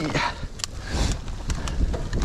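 Mountain bike rolling fast down a rough dirt trail: a steady rumble of tyres and wind on the mic, with sharp clicks and rattles from the bike over roots and rocks.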